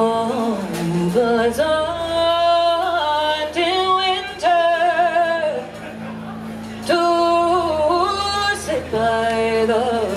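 A woman singing a slow song solo into a microphone, holding long notes with vibrato and sliding between pitches, with a steady low drone underneath. The voice drops away briefly about six seconds in, then comes back.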